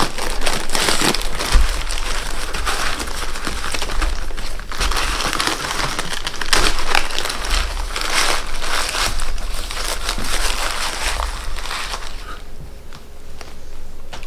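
Thin plastic bag crinkling and rustling as it is pulled open and worked off a plastic pond ball, dying down near the end.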